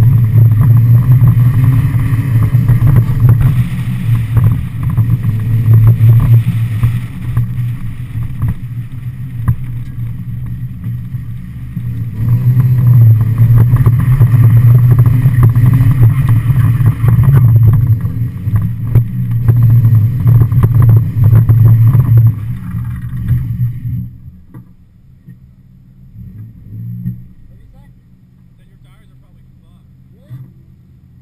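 Mazda Miata's stock 1.6-litre four-cylinder engine running hard while the car is drifted, its level surging up and down repeatedly. About 24 seconds in it falls away to a much quieter level.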